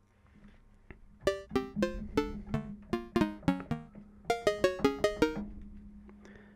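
Logic Pro X Drum Synth's '80s Cowbell' preset, a synthesized TR-808-style cowbell, played as a tuned melody of short pitched cowbell hits. The first phrase of about nine notes starts about a second in, and after a brief pause a quicker phrase of about seven notes follows.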